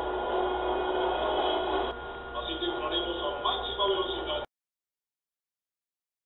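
Muffled, low-quality background of faint voices over a steady low hum, cut off abruptly to dead silence about four and a half seconds in.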